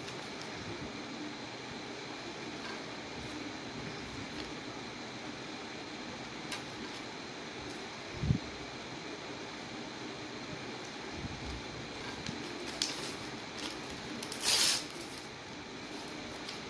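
Paper being torn by hand over a steady fan hum, with a short rip about 13 s in and the loudest, longer rip about a second and a half before the end. A dull thump comes about halfway through.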